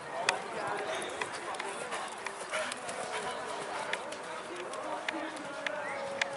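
Horse cantering on a sand arena just after clearing a jump, its hoofbeats and a sharp knock about a third of a second in heard under a steady murmur of spectators' voices.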